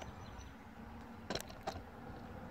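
Faint outdoor background with no distinct source, broken by two short clicks about a second and a half in.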